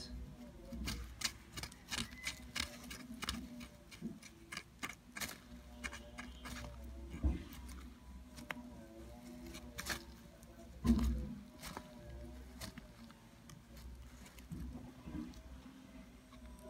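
Faint, irregular light clicks and taps as feeding tongs holding a thawed mouse knock and brush against artificial plant leaves while a bush viper strikes at it. A dull low bump comes about eleven seconds in.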